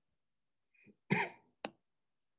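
A person's single brief cough-like sound, lasting under half a second, followed by a sharp click.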